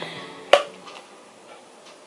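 A single sharp click about half a second in, followed by faint low background noise.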